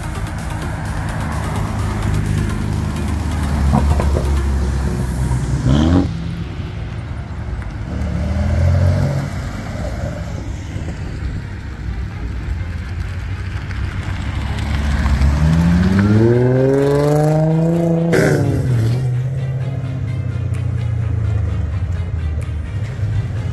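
Cars' engines revving as they drive off and pass by. There is a short rising rev that cuts off about six seconds in, and a longer acceleration climbing in pitch from about fifteen seconds in that cuts off sharply near eighteen seconds.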